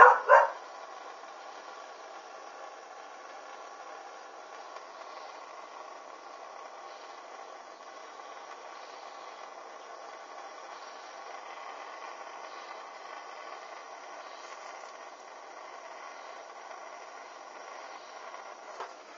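Jet-flame torch lighter burning with a steady hiss. Right at the start come two short, loud sounds a fraction of a second apart.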